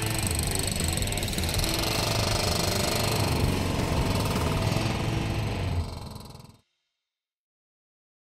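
Hydraulic hammer on a John Deere 332G skid steer pounding concrete pavement in rapid blows, with the skid steer's engine running underneath. The sound fades about six seconds in and then cuts to silence.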